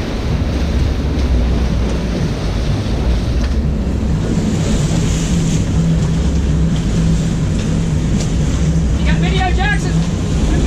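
A sportfishing boat's engines run at a steady low rumble, with water churning around the stern and wind buffeting the microphone. A short shout is heard near the end.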